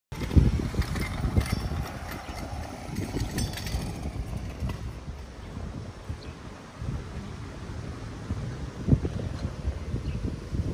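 Wind buffeting the microphone in irregular gusts of low rumble, with a motorcycle engine running in the first few seconds. A single knock comes near the end.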